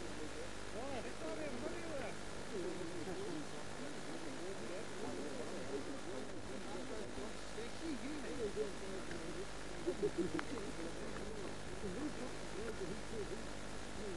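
Indistinct distant voices of players calling and chatting across an open cricket field, over a steady low hum. There are a few short knocks about ten seconds in.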